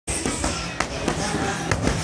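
Boxing gloves striking Thai pads, a series of sharp smacks, over background music.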